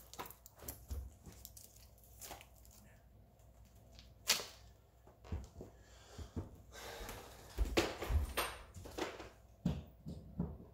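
Faint scattered knocks, thumps and clicks of someone moving about in a small room while the circuit's power is switched back on. There is one sharper click about four seconds in and a cluster of low thumps near the end.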